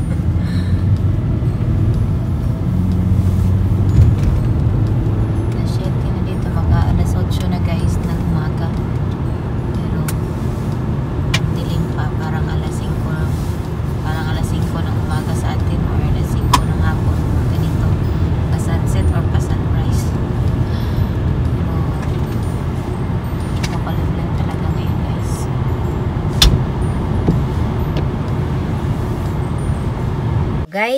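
Steady low rumble of a car driving on a wet road, heard inside the cabin, with a few scattered sharp ticks.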